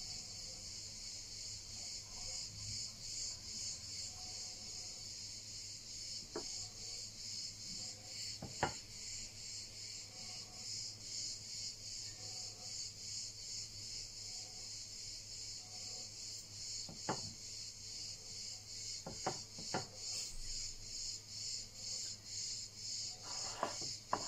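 Crickets chirping in a steady, evenly pulsing high trill, with a few light clicks from dishes being handled, the sharpest about nine seconds in.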